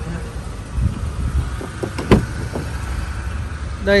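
A car's rear door being opened: a sharp latch click about two seconds in, with a few smaller clicks of handling around it, over a steady low hum.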